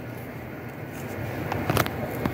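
Low steady background noise with a few light knocks near the end, from things being handled on a workbench.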